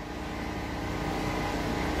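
A steady, low, engine-like background rumble with a faint hum, slowly growing a little louder.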